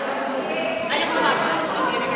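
Several people's voices talking and calling out over one another in a large gym hall, the chatter of volleyball players between rallies.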